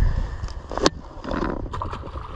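A largemouth bass released from the bank drops into the pond with a splash about a second and a half in, after a sharp click, over low wind rumble on the microphone.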